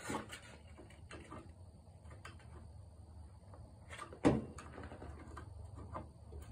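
Hand-tool handling on a small engine: a few faint clicks, then one sharp knock about four seconds in.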